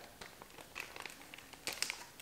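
Clear plastic zip-top biohazard specimen bag crinkling faintly as it is handled, with a few sharper crackles near the end.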